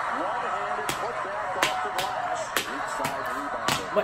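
Broadcast sound of a college basketball game: a ball bouncing on the hardwood court in a series of sharp, irregularly spaced bounces, over steady arena crowd noise and a voice.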